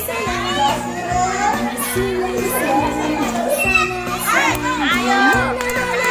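A crowd of children shouting and calling out over one another, cheering on a race, with music playing underneath.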